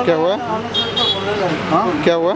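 People talking, with a short high-pitched steady tone about three quarters of a second in, lasting about half a second.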